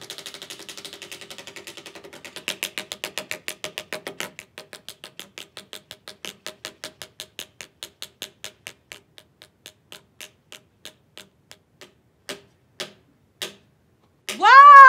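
A spinning prize wheel's flapper clicking against the metal pegs on its rim: the clicks come fast at first and slow steadily as the wheel winds down, ending in a few clicks about half a second apart as it stops. Music fades out in the first few seconds.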